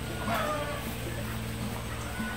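An infant's short whimpering cry, falling slightly in pitch, about a third of a second in.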